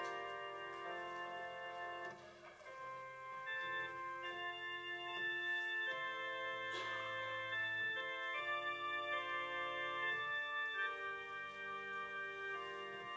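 Organ prelude: slow, held chords, each sustained for one to two seconds before moving to the next.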